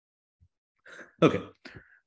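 A man briefly clears his throat about a second in, after a short silence, followed by a spoken "okay".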